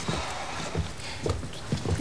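Footsteps on a hard floor: about four uneven steps as someone walks a short way across a room.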